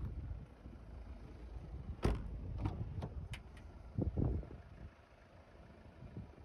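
Car door being handled as a rear door is opened: a sharp latch click about two seconds in, a few lighter clicks after it, then a dull thump around four seconds.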